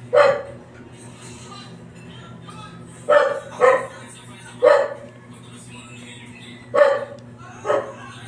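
A dog barking: six short barks spread unevenly, two of them in quick succession.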